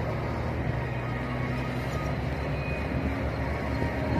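Hino truck's diesel engine running steadily while driving, a constant low hum with road noise and no change in speed.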